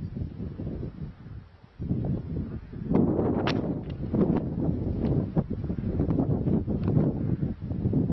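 Wind buffeting a camera microphone outdoors: a rough, gusty low rumble that dips briefly about one and a half seconds in and grows louder about three seconds in, with scattered short crackles.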